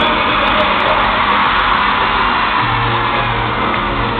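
A live band plays on an arena stage, heard from among the audience in a large reverberant hall. A low held bass note comes in about two and a half seconds in.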